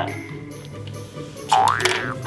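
A cartoon-like "boing" about one and a half seconds in, its pitch dipping and then sliding up, for a bouncing spring toy, with faint music underneath.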